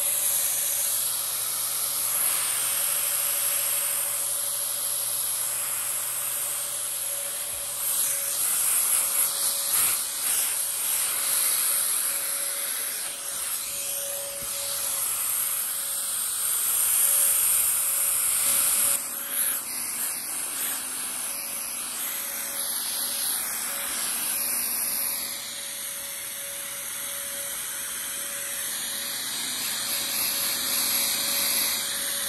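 Electric fogger's motor running steadily with a high, hissing whine as it puts out disinfecting mist, its level wavering in the second half.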